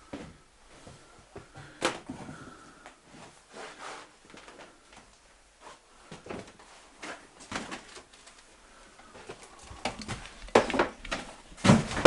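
Scattered knocks, clicks and scuffs of a person moving about a small room and handling things, with a sharp knock about two seconds in and a louder run of knocks near the end.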